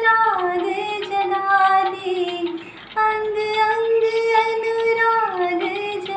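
A woman singing a Hindi devotional song to Krishna. She holds two long notes, each sliding down in pitch at its end, with a short breath between them about halfway through.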